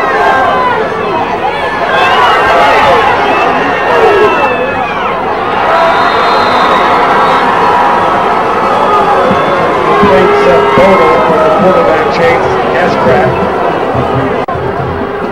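Football stadium crowd shouting and cheering loudly through a play, many voices overlapping.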